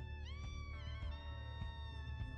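Instrumental background music: sustained notes over a steady low drone, with one note sliding up a little after the start and gliding back down within about a second.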